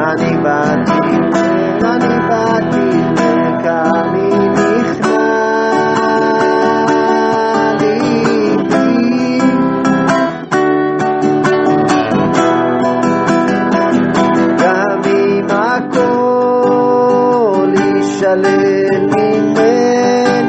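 Acoustic guitar strumming and picking under a sung melody, a niggun, with sustained notes that slide and waver in pitch.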